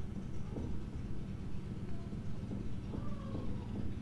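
Faint low thudding over a steady low hum, heard as though someone might be at the door.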